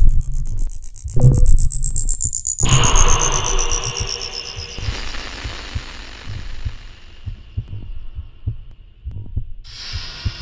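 Electronic trailer sound design: deep booming pulses about every second and a half, like a heartbeat, under a high tone that glides slowly downward. After about two and a half seconds a noisy rush swells in and slowly fades, while faster low pulses flicker underneath; a band of hiss comes in near the end.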